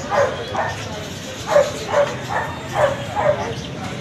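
A puppy yapping: about seven short, high yips in an irregular series, each falling in pitch.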